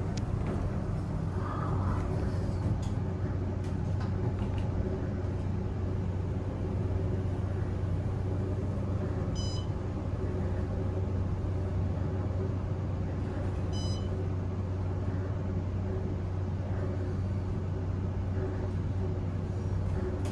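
Otis hydraulic elevator car travelling down, a steady low hum and rumble throughout. Two short high electronic beeps sound about four seconds apart, around the middle.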